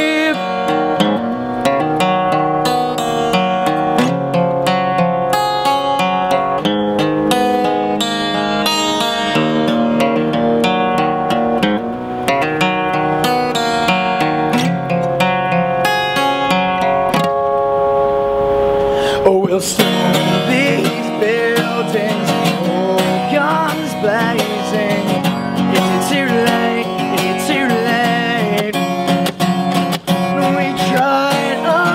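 Acoustic guitar playing solo, chords ringing out note by note. A male voice comes back in singing over the guitar about two-thirds of the way in.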